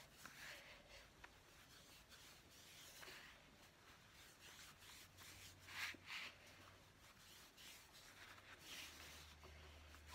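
Near silence with faint rustling and rubbing of cotton T-shirt strips being handled and pulled, a couple of slightly louder rustles near the middle and near the end.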